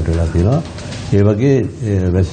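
A man speaking in a low voice, with a short, quieter lull about half a second in before he carries on.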